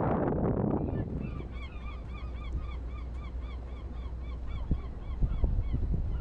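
A bird calling over and over, short rising-and-falling notes about three a second, over a steady low rumble.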